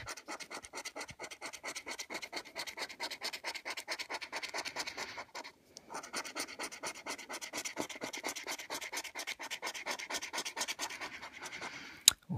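A coin scratching the silver coating off a paper scratchcard in quick, repeated strokes, pausing briefly about halfway through before carrying on.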